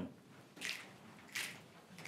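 A roomful of people snapping their fingers together in a steady rhythm, faint, with a group snap about every 0.7 seconds.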